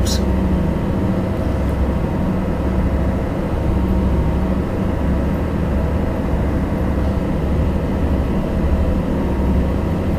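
Ferry's engine running in a steady low drone throughout, with a constant hum and a fainter haze of noise above it.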